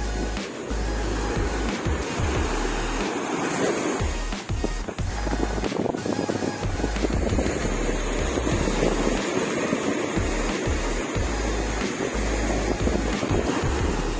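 Surf breaking and washing up a beach, a steady rushing of waves, with wind gusting on the microphone, under background music.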